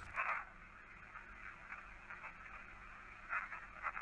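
Faint steady hiss of a ghost-hunting audio recording being replayed. A brief whisper comes just after the start, and a faint whisper begins again near the end as the start of "I remember". The investigators take the whispers for a spirit voice.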